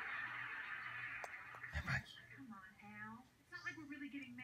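A baby making coos and gurgling vocal sounds with a teether in its mouth, with a soft thump just before two seconds in.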